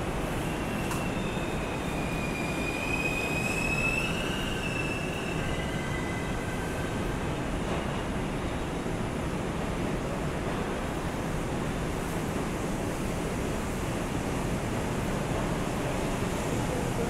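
An R142 subway car running through a tunnel, heard from inside: a steady rumble throughout, with a high wheel squeal that rises slightly and fades out around five to seven seconds in.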